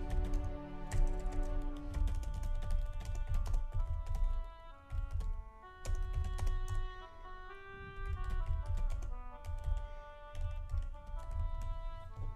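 Computer keyboard typing, a quick run of keystrokes with brief pauses, over background music of held notes.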